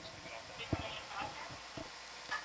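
Faint background talk with a few soft clicks, the sharpest just under a second in.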